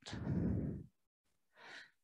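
A man's long audible out-breath lasting almost a second, breathed out as he sinks into a one-leg squat, followed about a second and a half in by a short, fainter in-breath.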